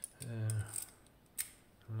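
A few sharp metallic clicks from a key turning in a Miwa DS wafer lock cylinder, the loudest about one and a half seconds in.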